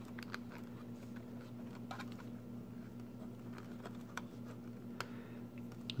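Faint scattered small clicks and taps of plastic connector parts being handled as a ribbon cable is fitted into a clamp-type harness connector on a circuit board, over a steady low electrical hum.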